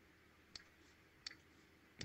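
Two faint, short clicks, about three quarters of a second apart, over near silence: computer mouse clicks entering keys on an on-screen calculator.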